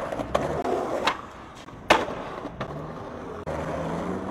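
Skateboard wheels rolling on street asphalt, with several sharp clacks of the board, the loudest a little under two seconds in.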